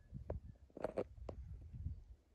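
Faint outdoor background: a low rumble with a few soft clicks and rustles scattered through it.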